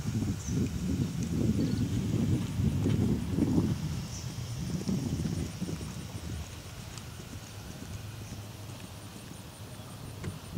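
Hoofbeats of an event horse cantering on grass turf, loudest in the first four seconds and then fading.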